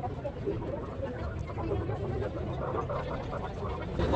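Busy outdoor street-market background: faint chatter of passers-by over a low, steady rumble of street noise.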